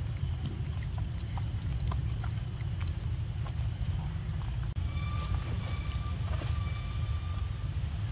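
A steady low rumble throughout, with small wet clicks and smacks of a macaque sucking milk through a drink-carton straw in the first half. Near the end a steady pitched tone with overtones sounds for about two and a half seconds.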